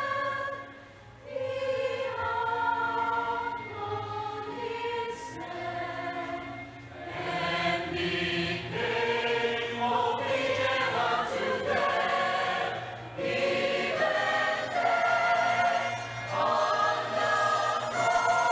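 A mixed choir of men's and women's voices singing an anthem in parts, in long held chords, with a brief break about a second in.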